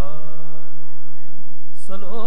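Indian harmonium holding steady reed notes in a gap between sung lines of Sikh kirtan, with a male voice coming back in near the end.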